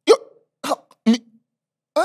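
A man's voice making four short, clipped vocal sounds, each well under half a second, with dead silence between them.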